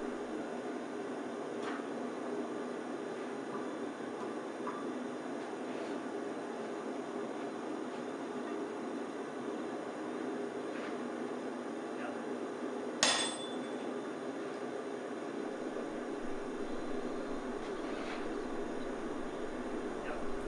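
Steady roar of a propane gas forge burning, with a single ringing metal clang about thirteen seconds in and a few faint clinks of metal tools.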